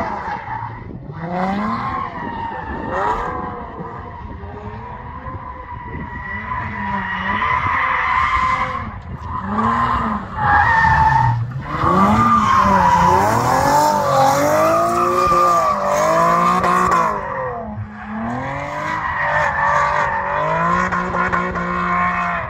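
Nissan 370Z NISMO's naturally aspirated V6 revving up and down again and again as it drifts, its rear tyres squealing in a long, steady skid. It is loudest a little past the middle.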